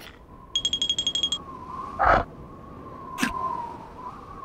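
Cartoon sound effects over a faint held tone: a quick rattling run of high beeps about half a second in, a short loud burst about two seconds in, and a sharp click a little after three seconds.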